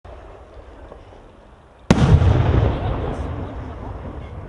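A 6-inch aerial firework shell bursting: one sharp bang about two seconds in, followed by a rolling echo that fades away over the next two seconds.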